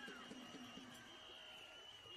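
Near silence, with a faint steady high-pitched tone running underneath.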